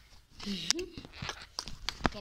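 A child's brief vocal sound, then several sharp clicks and rustling.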